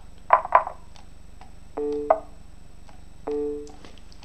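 Two short loud sounds just after the start, then a short electronic chime of two steady notes played together, sounded twice about a second and a half apart.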